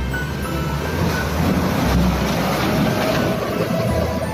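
Small diesel dump truck driving past close by on a dirt track: a rough engine-and-body rumble, loudest about halfway through, with background music underneath.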